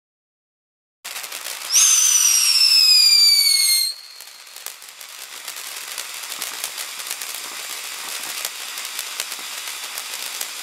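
Consumer firework fountain lighting about a second in with a hiss, then a loud whistle falling in pitch for about two seconds, which cuts off sharply. After that the fountain keeps spraying sparks with a steady hiss and scattered small crackles.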